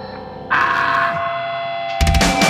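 A distorted noise drone with several steady held tones, an interlude in a grindcore demo recording, swelling louder about half a second in.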